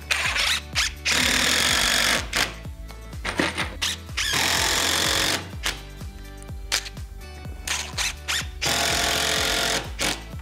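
Cordless impact driver driving screws through a steel strap hinge into a wooden door, in several bursts of about a second each. Background music plays throughout.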